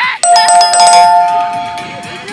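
Subscribe-button animation sound effect: a few quick clicks, then a two-note ding-dong chime like a doorbell. Both notes ring on together and fade out over about two seconds.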